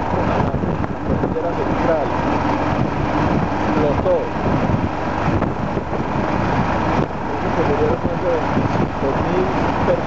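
Motorcycle riding at road speed: constant wind rush on the microphone blended with engine and tyre noise, steady and loud throughout.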